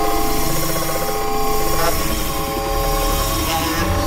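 Dense experimental electronic noise music: several sustained drone tones layered over a thick low rumble, with a rapid rattling, machine-like pulse through the first half that gives way to steadier drones.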